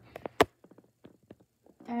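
A few light taps and one sharper click in the first half second, from small toiletries being handled on a bathroom countertop, then quiet with a few faint ticks. A voice starts at the very end.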